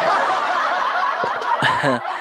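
A man laughing close to the microphone: breathy, unvoiced laughter for about the first second, then a short voiced laugh near the end.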